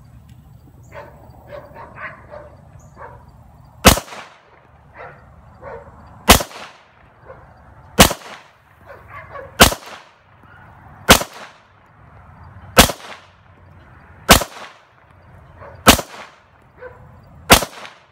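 A 9mm Glock pistol fitted with a Wilson Combat match-grade barrel, fired in its first test shots at a slow, even pace. Nine shots come about one and a half to two and a half seconds apart, starting about four seconds in, each followed by a short echo.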